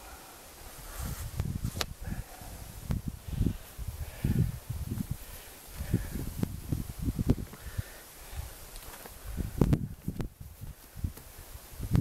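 Gusting wind buffeting the microphone in irregular low rumbles, with rustling and handling noise as a crossbow bolt is pulled from a foam target; a couple of sharp clicks, one about two seconds in and one near the end.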